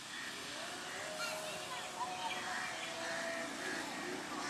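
Faint distant voices over a steady outdoor hiss, with no clear rumble of the train.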